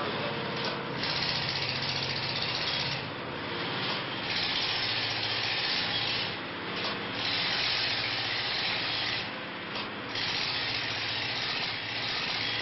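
A hand tool scrapes over the rock of a fossil dinosaur egg nest in repeated strokes, each a second or two long with short pauses between, over a steady low hum from a diesel generator.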